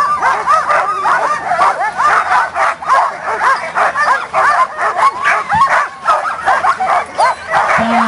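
A team of harnessed sled dogs barking and yelping all at once, many short overlapping calls without a break. The dogs are held at the start line, eager to run.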